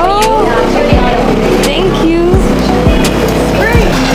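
Background music with pitched melodic lines over a recurring low beat.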